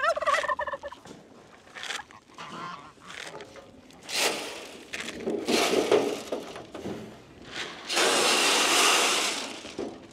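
Farm poultry calling, with domestic turkeys gobbling. Two long stretches of rushing noise come in, one near the middle and a louder one near the end.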